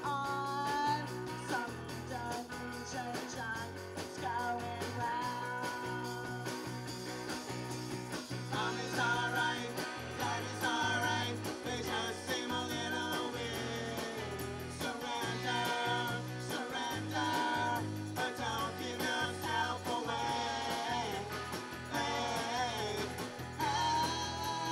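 Live rock band in a new wave style: a woman singing lead over electric guitar and drums, with a man's voice joining on a second microphone. The song runs on steadily without a break.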